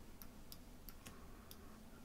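A handful of faint computer mouse clicks, unevenly spaced, over near-silent room tone.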